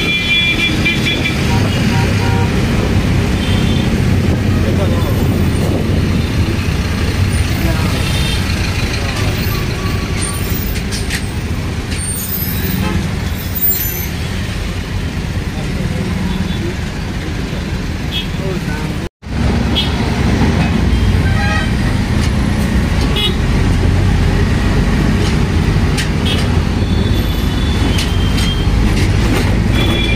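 Auto-rickshaw engine running inside the open cabin as it moves through city traffic, with road noise and horns from surrounding vehicles, several near the start and again near the end. The sound drops out for an instant about two thirds of the way through.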